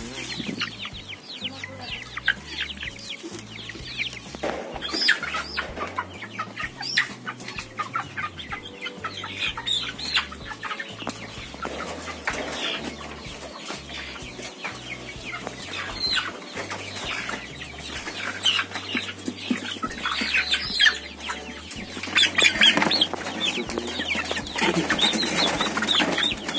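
Many young white cockerels clucking and squawking in short, overlapping calls, crowded together in a bamboo carrying basket, with some wing flapping.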